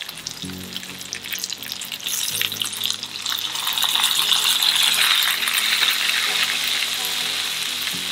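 Fish fillets frying in garlic butter in a nonstick pan, a steady sizzle that grows louder about three seconds in as caper juice is poured into the hot butter.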